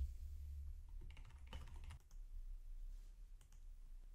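Faint typing on a computer keyboard, a quick run of keystrokes about a second in and a few more near the end, over a low hum.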